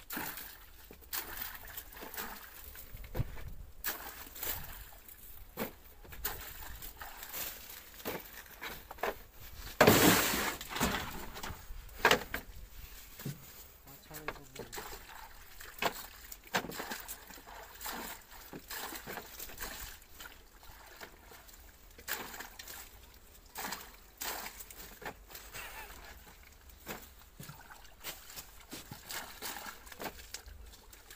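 Hands of green bananas being dipped and swished in a tub of water, with repeated irregular splashes and sloshing, and light knocks as they are set into plastic crates. The loudest splash comes about ten seconds in.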